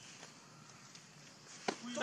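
Quiet background, then near the end a single sharp click followed by a short, low, steady voice sound.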